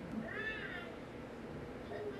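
A single meow-like call, rising then falling in pitch and lasting about half a second, over steady background noise.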